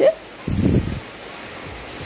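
A brief low rumble as the aluminium kadai is shifted on the gas stove, about half a second in, followed by a steady low hiss.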